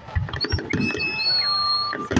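Fireworks display going off in rapid succession: a dense run of bangs and crackles, with high whistles held about a second at a time over them.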